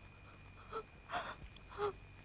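A woman sobbing through a hand pressed over her mouth: three short, catching sobs and gasps.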